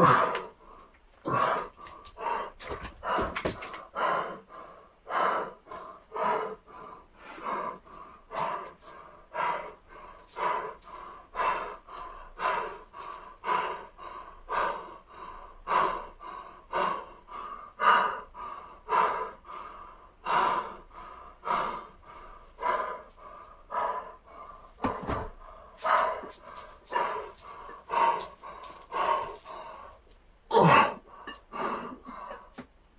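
A man breathing hard between and during weight-training sets, forceful breaths about once a second, the exertion of a fast circuit workout.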